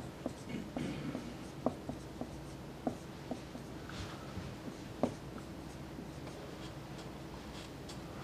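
Marker writing on a whiteboard: short squeaks and taps of the tip as symbols are drawn, a few sharper squeaks standing out in the first five seconds, over a faint steady hum.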